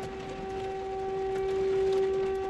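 A steady pitched hum with a few overtones, slowly growing a little louder.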